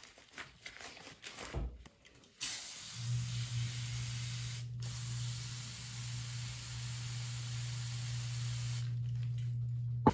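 Spray Comet foaming cleaner sprayed onto sponges: one long continuous hiss with a steady low hum under it, broken once briefly, lasting about six seconds. Before it, a couple of seconds of wet squelches from a soaked sponge being squeezed.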